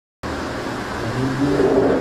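Steady background hum and hiss, with a man's drawn-out voice coming in about a second in, just ahead of his speech.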